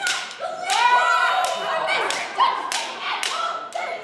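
A rapid, irregular series of sharp slaps, about two a second, with voices crying out between them.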